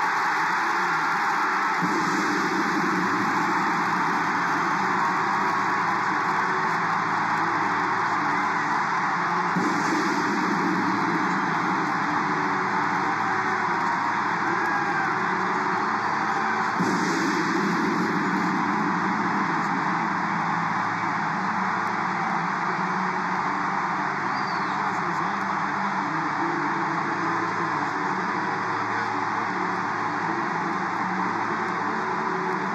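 A packed ballpark crowd cheering loudly and without a break, celebrating the home team's series-clinching final out, swelling a few times.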